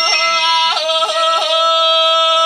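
A woman singing a held note in Sakha (Yakut) style, broken several times by quick upward yodel-like flips of the voice: the kylyhakh throat ornament of Sakha song.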